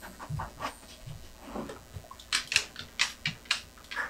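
A dog panting rapidly at about four breaths a second, with light clicking in the first second.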